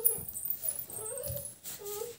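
A young child's high-pitched voice making wordless, drawn-out sounds, broken into a few short stretches.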